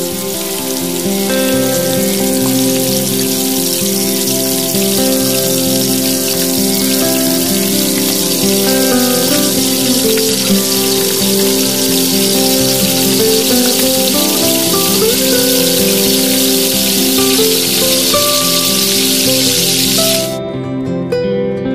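Hot oil sizzling steadily as batter-coated paneer pieces deep-fry in a tiny kadai, with background music under it.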